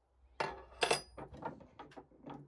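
Metal tools and parts clinking against each other at a metalworking lathe: two sharp, ringing clinks close together just under a second in, then several lighter clicks.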